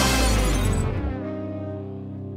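Ska band music dropping away: the loud full band with its bright crash stops about a second in, leaving a held low chord that keeps fading.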